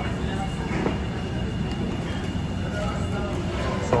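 Steady low rumble of restaurant background noise, with faint voices of other people talking.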